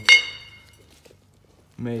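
Stainless steel tube set down on a concrete floor: one sharp metallic clink right at the start that rings briefly and dies away.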